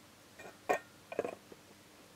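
Metal clinks and taps as a Nernst lamp's slotted metal housing is lowered and seated over the lamp: one sharp, briefly ringing clink under a second in, then a quick cluster of smaller taps and a last faint tick.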